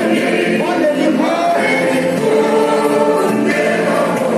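A male vocal group singing a gospel song in close harmony, several voices holding sustained chords.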